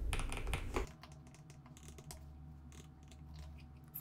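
Typing on a computer keyboard: a quick run of keystrokes in the first second, then only a few faint key clicks.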